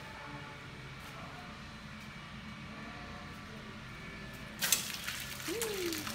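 A steady low hum, then about three-quarters of the way through a sudden rush of water bursting from the bottom valve of a conical stainless brewing tank and splashing onto the floor. It is the sign that the tank has filled with water.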